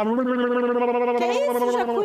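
A man's voice holding one long vocal cry at a steady pitch, acting out a person getting an electric shock.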